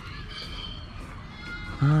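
Farm animals calling in the distance, a few thin wavering high calls over a steady low background rumble; a man starts talking just before the end.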